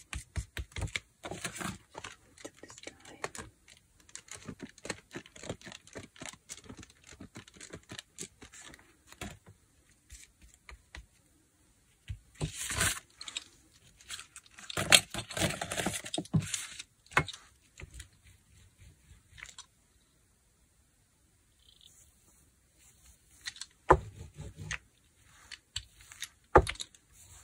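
Paint being mixed and spread on a plastic palette sheet for gelli printing: quick small scrapes and taps, a denser stretch of sticky scraping around the middle, and a couple of sharp knocks as tools are set down or picked up near the end.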